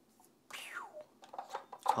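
Quiet handling of a film cutter and a strip of cut negative film: a short falling squeak about half a second in, then a few small clicks.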